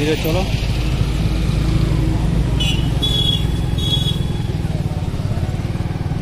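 Motorcycle engine running steadily while riding, heard from on the bike, with a few short high-pitched beeps around the middle.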